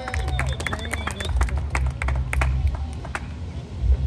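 Scattered hand clapping from a small audience: many separate, irregular claps for about three seconds that thin out toward the end, over a low steady rumble.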